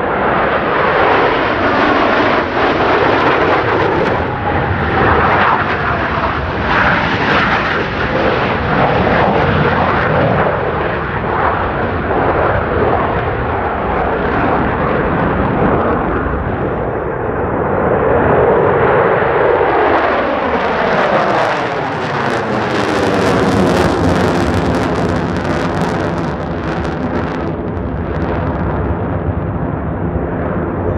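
Jet engine roar of Blue Angels F/A-18 Super Hornets, each with twin General Electric F414 turbofans, flying past in formation. It is a continuous loud roar whose tone sweeps up and down as the jets pass overhead, with a harsher hiss in the latter part.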